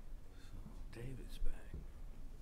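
Low, indistinct talk between people in a room, with a short sharp sound about one and a half seconds in.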